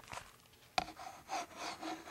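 Rubbing and scraping handling noises, starting with a sharp knock about three-quarters of a second in and going on in uneven scrapes.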